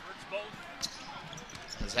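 Basketball bouncing on a hardwood court as it is dribbled up the floor, a few faint bounces over low arena background noise.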